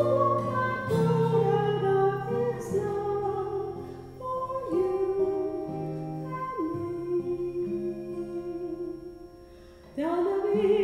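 A woman singing a slow song in long held notes over instrumental accompaniment. The music thins and fades near the end, then picks up again.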